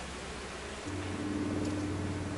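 Honeybees humming over an open hive. About a second in, as a frame is lifted out, a louder, steadier hum comes in.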